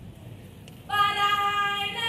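Low hall room tone for almost a second, then a single high voice begins an unaccompanied Ewe traditional song, holding long notes.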